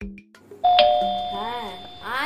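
Doorbell chime ringing a two-note ding-dong. It starts sharply about half a second in and rings on, slowly fading.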